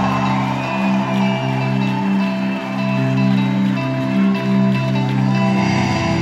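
A live rock band playing in a large hall: electric guitars and bass ringing out sustained chords that change every second or so.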